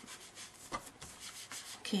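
Inked foam applicator rubbed lightly over embossed cardstock: a faint, soft rubbing in a few strokes.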